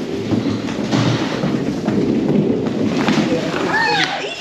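Steady rubbing rumble of a rider sliding down a long railed miners' slide, with a few light knocks along the way.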